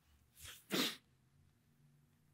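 A man's short, sharp breathy burst at the microphone, a small one followed at once by a louder one, within the first second, like a sniff or a stifled sneeze.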